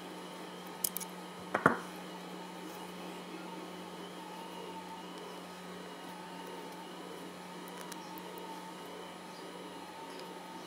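A couple of light clicks and one sharp knock about a second and a half in, from pliers and a 3D-printed nylon gear being handled on a workbench. After that only a steady low hum of room tone, while the nylon gear strip is twisted by hand without an audible sound.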